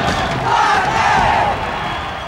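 A crowd of people cheering and shouting together. The voices swell about half a second in and ease off near the end.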